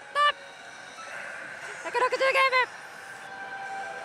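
Another God Hades pachislot machine playing its bonus-mode sounds: steady electronic tones, with a brief voice at the start and another about halfway through.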